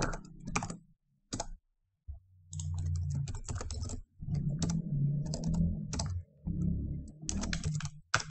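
Typing on a computer keyboard: runs of quick keystrokes, broken by a pause of about a second near the start.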